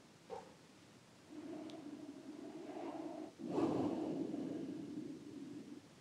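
A person's slow, audible breathing close to the microphone: one long breath of about two seconds, then a louder, noisier one of about two seconds.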